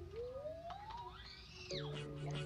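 A whistle-like electronic tone gliding steadily up in pitch for about a second and a half, then dropping sharply. Near the end, steady held music chords start.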